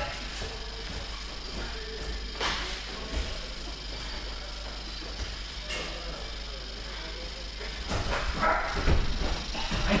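Grapplers sparring on gym mats: a couple of sharp knocks on the mat over a steady hum in a large hall, then scuffling and voices calling out near the end as one of them is taken down.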